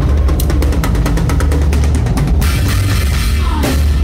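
Drum kit played live in a loud rock band. A run of rapid, even hits lasts about two seconds, then a ringing cymbal wash takes over, and the hits start again near the end.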